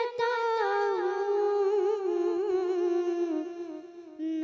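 A boy singing a naat, an Urdu devotional poem, unaccompanied into a microphone. He draws out one long phrase with wavering pitch that slowly falls and fades near the end.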